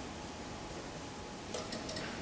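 Quiet room tone with a steady faint hiss, broken by a brief cluster of small clicks about one and a half seconds in.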